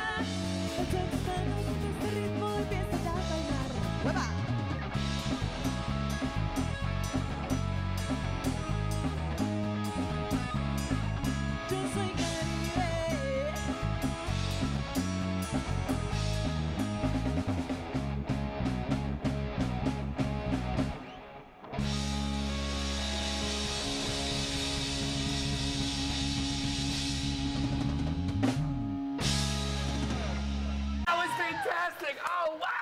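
Live Latin band playing an instrumental passage on electric bass, drum kit and electric guitar. About 21 seconds in the music stops for a moment, then a long held chord rings out and a final hit comes near the end.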